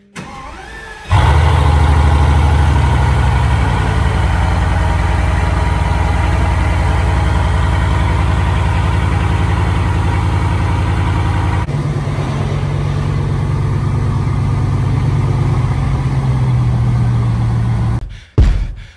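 Bugatti Veyron's 8.0-litre W16 engine starting: a brief rising starter whine, then it catches about a second in and settles into a loud, steady idle. About twelve seconds in, the idle note shifts slightly and drops a little in level.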